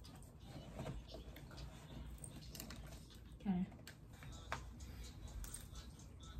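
Faint clicks and rustles of a pair of over-ear headphones being taken off and put on, with a short low voice sound about three and a half seconds in.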